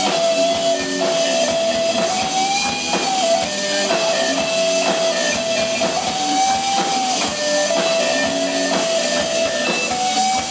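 Live rock band playing an instrumental passage: an electric lead guitar holds long notes with slow bends over rhythm guitar and drum kit.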